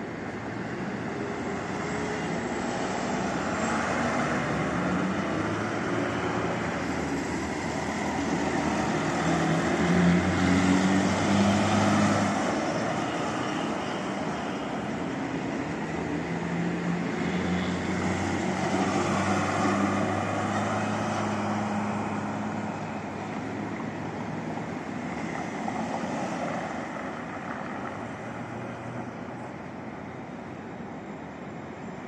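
Road traffic: vehicle engines and tyres swelling and fading as cars and buses pass, loudest about a third of the way in.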